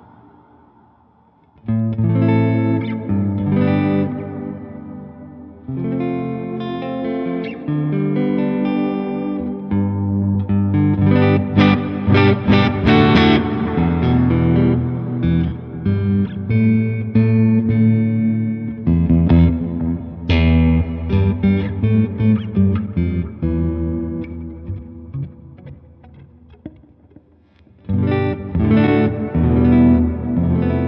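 Squier Affinity Jazzmaster electric guitar played through an amp with effects: chords and single notes ring out, testing how well it holds tuning under the vibrato arm, with a pitch glide about two-thirds of the way through. The playing starts about two seconds in, dies away near the end and picks up again.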